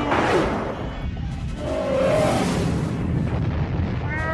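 Missile-strike and explosion sound effects: a rushing burst of noise at the start and another swell about two seconds later, over orchestral film-score music.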